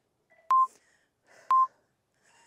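Workout interval timer counting down the last seconds of an exercise: two short electronic beeps, one a second apart, each opening with a click.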